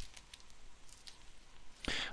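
Faint handling noise of a thin green TRF film sheet and its paper packet being slid back together: a soft click at the start, then scattered light ticks and rustles.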